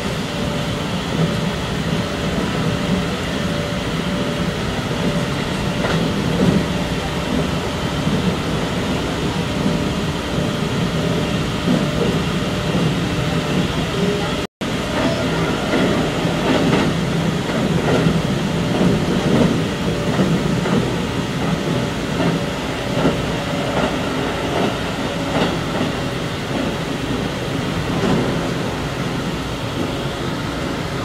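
Keikyu electric train running along the line, heard from inside its rear cab: a steady rumble of wheels on rail with occasional faint knocks. The sound drops out for an instant about halfway through.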